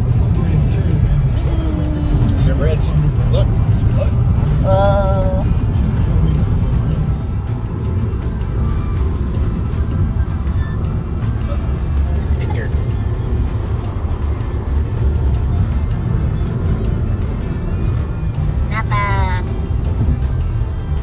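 Steady low road noise inside a car cabin at highway speed, with music over it. Short wavering voice-like sounds come about five seconds in and again near the end.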